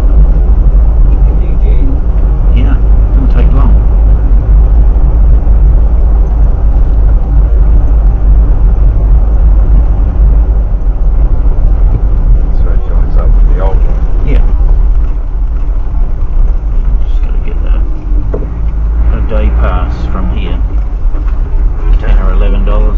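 Steady low rumble of a 4WD's road and engine noise as picked up by a dashcam inside the cabin, easing a little as the vehicle slows near the end.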